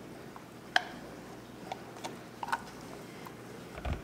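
A few faint, light clicks of a small glass beaker and silicone spatula knocking against a plastic mixing bowl as colourant is poured into soap batter, the sharpest about a second in, with a soft thump near the end.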